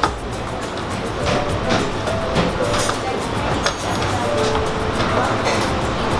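Background music throughout, with a few short knocks of a chef's knife cutting heirloom tomatoes against a plastic cutting board.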